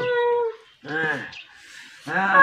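A woman's two pained cries: a held, even-pitched one, then a shorter cry that falls in pitch about a second in.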